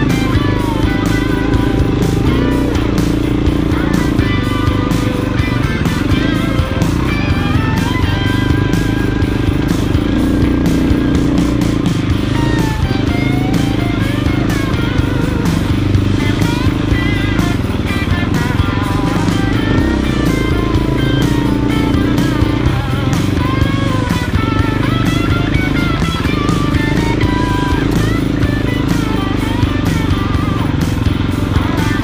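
KTM dirt bike engine running as the bike is ridden along a rough trail, its pitch rising and falling with the throttle, under continuous background music.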